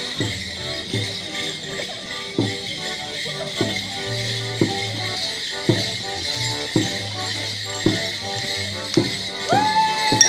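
Border Morris dance tune played on melodeon and other instruments, with the dancers' wooden sticks clacking together about once a second over the music and bells jingling. Just before the end a ringing metallic clang starts.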